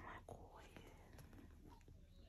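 Near silence: a soft breathy whisper or exhale right at the start, then only a few faint small clicks and rustles of handling.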